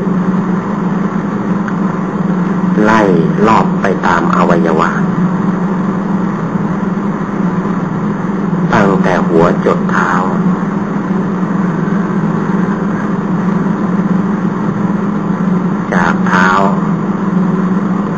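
A steady, loud low hum with hiss runs under a man's voice. He speaks Thai in three short phrases about three seconds in, about nine seconds in and near the end, with long pauses between them.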